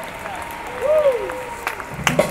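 Concert crowd applauding, with a voice calling out in a rising-and-falling glide about a second in.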